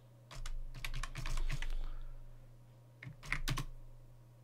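Typing on a computer keyboard: short sharp keystrokes in a quick run through the first second and a half, then a few more about three seconds in.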